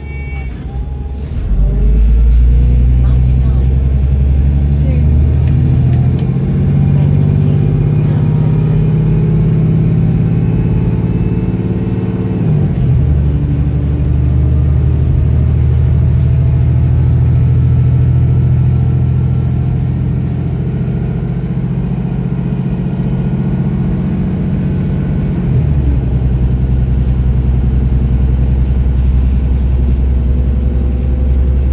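Diesel engine of an Arriva London DW-class double-decker bus, heard from inside the lower deck, pulling hard under kickdown: the engine note climbs about a second and a half in, changes abruptly at an automatic gear change about twelve seconds in, then holds until another gear change near the end.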